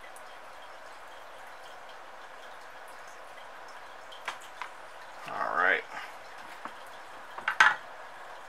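Steady low hiss with a few light clicks and taps as a soldering iron and a wire are handled on a cutting mat, the loudest taps near the end. A short hum rising in pitch from a person's voice comes a little past halfway.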